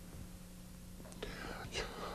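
Quiet room tone in a lecture room: a steady low hum, with faint soft noises in the second half.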